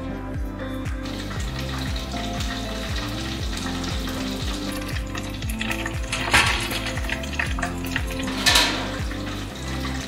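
Battered fish deep-frying in hot oil: a steady sizzle, with two louder bursts of sizzling about six and eight and a half seconds in. Background music with a steady beat plays throughout.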